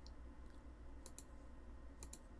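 A few faint computer-mouse clicks over a low steady hum.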